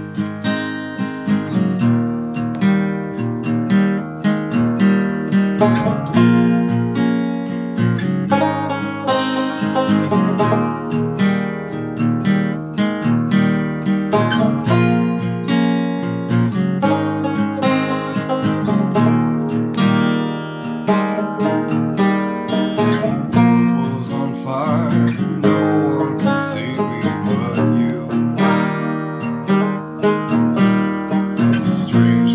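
Banjo and acoustic guitar playing an instrumental piece together, a steady stream of picked notes without pause.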